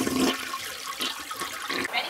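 A toilet flushing: a rush of water that eases off after a moment and cuts off just before the end.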